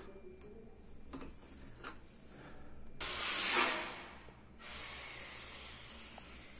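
Faint metallic clicks and scraping from an Allen key turning the set screw in the neck of a lever door handle. About three seconds in comes a louder rushing hiss lasting about a second and a half, then a fainter hiss.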